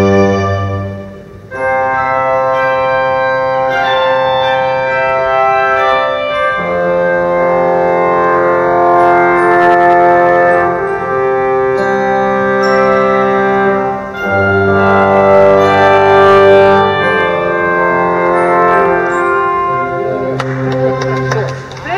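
The Orpheum's Wurlitzer theatre pipe organ playing full, sustained chords, with the chord changing every few seconds and a short drop in volume about a second in.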